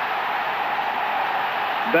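Steady crowd noise from a football stadium, an even wash of many voices with no single voice standing out.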